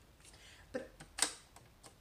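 A few light plastic clicks and taps from a folding We R Memory Keepers paper trimmer being handled and folded shut, the sharpest a little past a second in.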